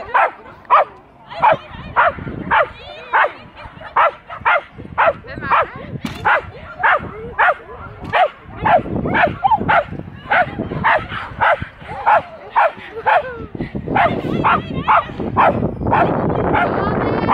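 A dog barking repeatedly and excitedly, about two barks a second and without a break, coming a little faster near the end.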